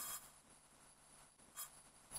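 Near silence, with one faint, brief soft sound a little past halfway.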